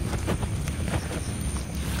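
Footsteps in undergrowth: several soft, irregular steps and rustles over a low rumble.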